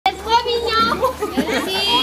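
A group of young people's voices calling out at once, several overlapping with no single clear speaker.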